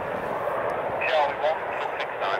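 Air band scanner radio hiss, with a brief garbled snatch of a transmission about a second in.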